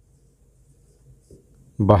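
Whiteboard marker writing on a whiteboard: faint strokes of the pen tip across the board.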